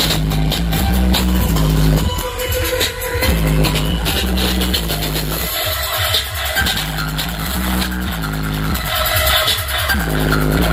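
Loud electronic DJ dance track with heavy bass played through a large carnival sound system during a sound check. The bass line drops out briefly three times, about two, five and a half and nine seconds in.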